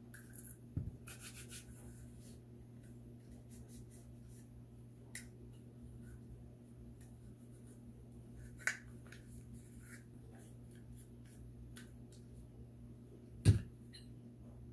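Faint rubbing and scattered small clicks of a cloth patch wiping Glock 43X polymer pistol parts by hand. There is a small knock about a second in, and a louder dull thump near the end as a part is set down on the towel-covered table.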